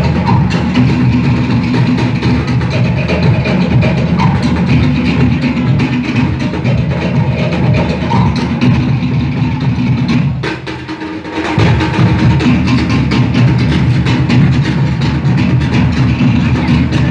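Tahitian drum ensemble playing a fast rhythm: sharp wooden knocks typical of toʻere slit-log drums over a heavy bass-drum beat. The low drumming drops out briefly about ten and a half seconds in, then the full beat comes back.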